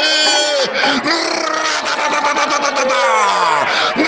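A match commentator's raised, excited voice calling the play, its pitch sliding down near the end.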